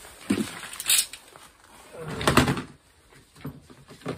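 Hands rummaging through tools in a plastic storage box: a few separate knocks and clatters of plastic and metal, the loudest about two seconds in.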